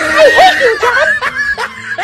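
A man laughing loudly.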